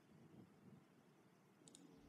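Near silence: room tone, with a faint quick double click of a computer mouse near the end.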